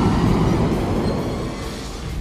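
Cinematic logo-intro soundtrack ending in a dense, noisy hit that is loudest at the start and fades away over two seconds.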